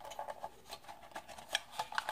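Light plastic clicks and rubbing as a small plastic toy quadcopter's body is handled by hand, with a couple of louder clicks in the second half.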